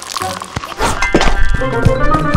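Cartoon soundtrack music with several sharp thunks and knocks starting about half a second in. The music swells from about a second in.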